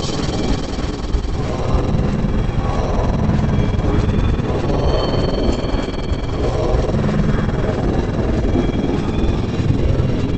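Heavily effects-processed commercial soundtrack: a loud, dense, garbled mix of music and voice with a constant low rumble and no clear words.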